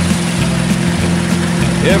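1950 Ford F1 rat-rod truck's engine running steadily, heard inside the cab, with a country song playing over it. The song is in an instrumental gap, and the singing comes back in right at the end.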